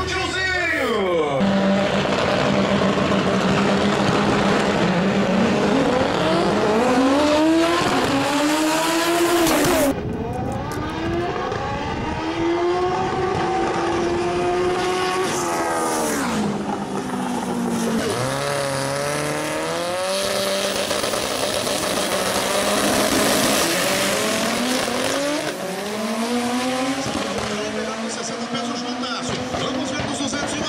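Drag-racing car engine held at a steady pitch for a few seconds, then revving hard in a series of rising sweeps, each dropping away sharply at a gear change as the car accelerates down the strip.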